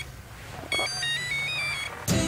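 Mobile phone ringtone: a short electronic melody of stepped high beeps, starting about two-thirds of a second in after a brief lull.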